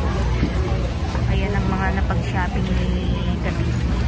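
Busy warehouse-store ambience: scattered chatter of shoppers over a steady low hum.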